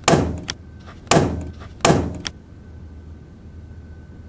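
Three loud thumps about a second apart, each fading out quickly, followed by quiet room tone with a faint steady high-pitched hum.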